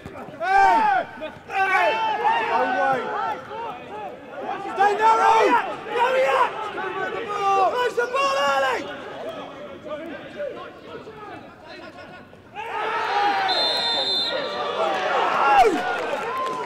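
Footballers shouting to one another across the pitch. Near the end there is a sudden burst of louder shouting, and a short referee's whistle blast stops play for a foul.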